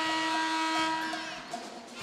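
Pep band brass, trumpets in front, holding one long chord that ends about a second in.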